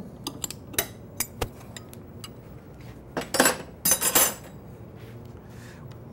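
Metal clicks and clinks of a wrench snugging down the arbor nut on a stacked dado blade set on a table saw. A few louder metal clatters come about three to four seconds in.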